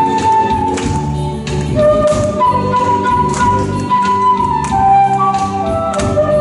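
Bamboo transverse flute playing a slow melody in long held notes over a recorded backing track with a steady beat. The melody holds a high note for nearly two seconds in the middle, then steps down near the end.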